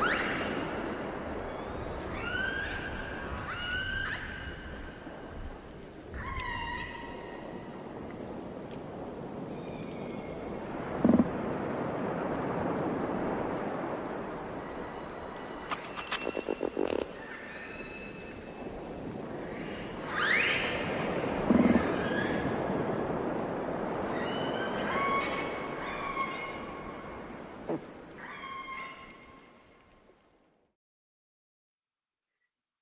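Ocean soundscape recording of whale calls: high calls that bend in pitch, in groups every few seconds, over a steady wash of sea noise with a few short knocks. It fades out at the end.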